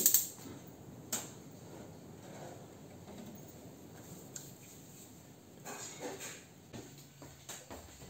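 Lit gas stove burner hissing faintly under an aluminium pot, with a single sharp click about a second in and a few light knocks in the last two seconds.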